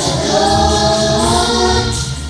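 Children's choir singing a song in unison.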